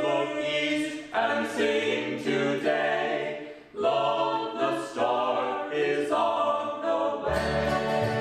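A small mixed group of voices singing a carol unaccompanied, in close harmony. Near the end the string band comes in under them with upright bass and plucked strings.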